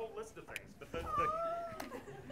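Faint off-microphone voices in the room, with one high, drawn-out sound about a second in that lasts under a second.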